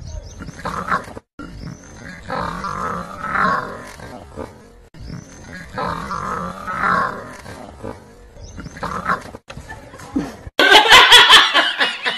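Growling and roaring animal sounds in uneven bursts, two of them nearly identical. About ten and a half seconds in, loud shrieking laughter from two people cuts in.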